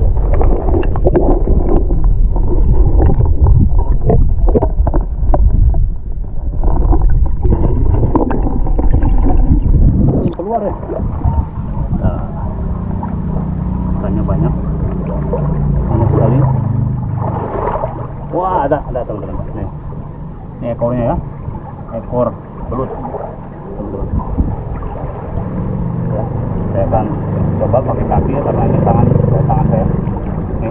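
Water rushing and sloshing against a waterproof camera held underwater in a shallow river: a loud low rumble with knocks for the first ten seconds, then quieter splashing and gurgling as the camera moves along the bank near the surface.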